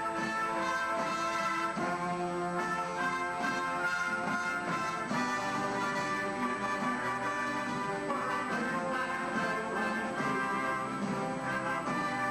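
Military concert band playing, with brass and woodwinds together holding chords that shift every second or so.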